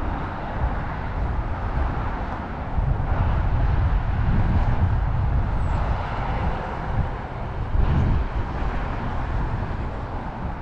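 Steady roar of road traffic with an uneven low rumble underneath.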